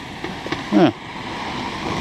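Steady outdoor street background noise, an even hiss that grows slightly louder in the second half, under a man's single spoken "yeah".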